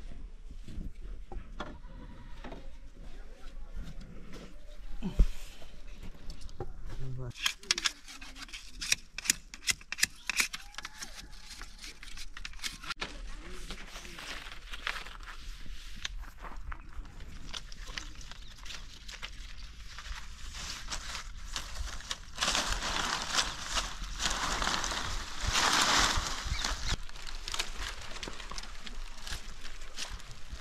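Dry rustling and swishing of long green fronds being handled and dragged into bundles, with scattered clicks and knocks. The rustling is loudest for a few seconds about two-thirds of the way through.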